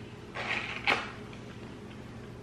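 A mouthful of chocolate-and-mixed-nut snack bar being chewed, with two crunches in the first second, the second one sharper.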